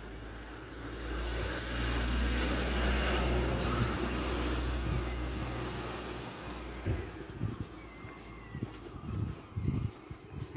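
A car passes along the street, its engine and tyre noise swelling over the first few seconds and fading away by about six seconds in.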